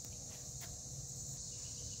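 Steady, high-pitched chorus of insects that runs without a break, with a faint low background rumble.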